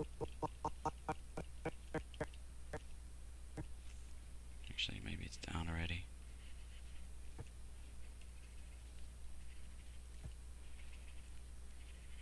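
A quick run of light clicks, about five a second, for the first three seconds, like computer key or mouse clicks stepping through frames. A short vocal sound, a hum or murmur, comes about five seconds in, over a low steady background hum.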